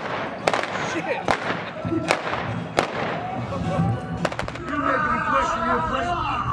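A series of sharp cracks from a staged western stunt-show fight, about one every second, then a quick cluster of several near the four-second mark. Voices and music run underneath.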